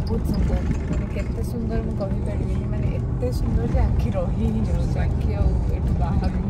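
Steady low rumble of engine and road noise inside a moving coach at cruising speed.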